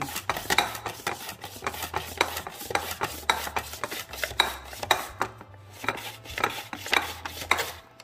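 A plastic mandoline slicer (Pampered Chef Simple Slicer) cutting a watermelon radish: the food guard is pushed back and forth over the blade in quick strokes, each one a short scraping clack, about two to three a second, stopping shortly before the end.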